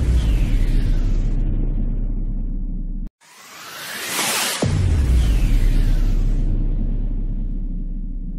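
Cinematic intro sound effect: a deep boom with a long low rumble that fades, cut off abruptly about three seconds in. Then a rising whoosh builds again and lands on a second boom, whose rumble slowly fades.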